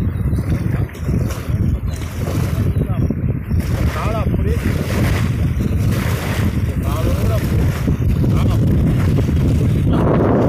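Strong wind buffeting the microphone over choppy lake water, with small waves washing against the shore. Brief faint voice-like calls about four and seven seconds in.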